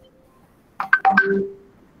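A short cluster of electronic beeping tones about a second in, lasting about half a second.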